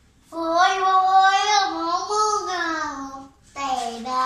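A boy singing unaccompanied, holding long notes in one extended phrase, then pausing briefly and starting a second phrase near the end.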